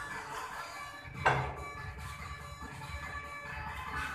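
Background music playing steadily, with one sharp clack of pool balls striking about a second in.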